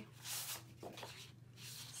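Sheets of scrapbook paper and cardstock being handled and slid over one another, a soft papery swish about a quarter second in and fainter rustles after, over a low steady hum.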